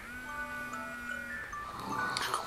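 Smartphone alarm going off: an electronic melody of clear pitched notes starting suddenly, over a low tone held for about a second and a half.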